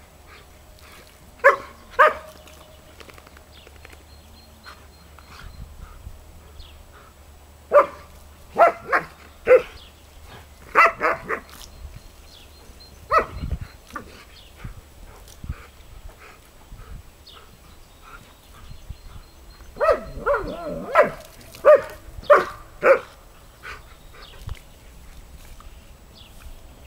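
German Shepherd dogs barking excitedly in short runs while playing at the water jet from a garden hose: two barks, a quick run of barks, a single bark, then a denser flurry of barks near the end.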